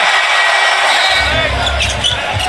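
Arena crowd cheering a made three-pointer. About a second in, music with a steady bass comes in under the cheering.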